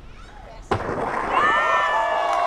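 A skateboard slams down hard on the street after a big drop off a high wall, a single loud crack about two-thirds of a second in, followed at once by several people yelling and cheering.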